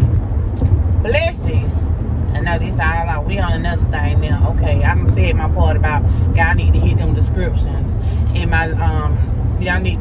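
Steady low rumble of a car's road and engine noise inside the cabin while driving, under a woman talking.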